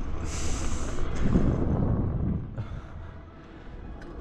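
BMX bike rolling over paving stones with wind on the microphone, with a short hiss near the start and a low rumble in the middle before it quietens.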